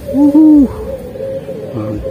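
A man's short hooting vocal call, rising then falling in pitch over about half a second near the start, an excited wordless cry while landing a fish. A faint steady hum runs underneath.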